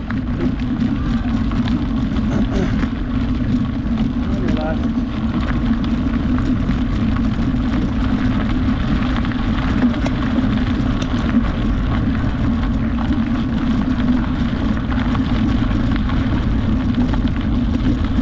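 Steady rumble of wind on the microphone and tyres rolling over a gravel trail at riding speed, with a constant low hum under it.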